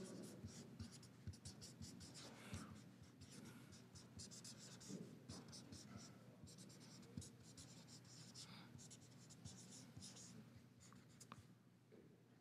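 Faint scratching and squeaking of a felt-tip marker writing on paper, in many short, irregular strokes.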